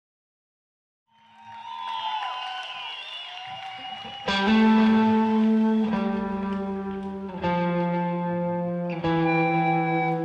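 After about a second of silence, a live band's song intro fades in: electric guitar with wavering, gliding notes. From about four seconds in come loud sustained chords that change roughly every second and a half.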